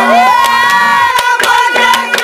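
A young boy's high voice sliding up into a long held note, over a steady drone and scattered drum strokes.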